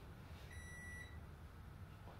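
A single short electronic beep, one steady high tone of about half a second, over a faint low room hum.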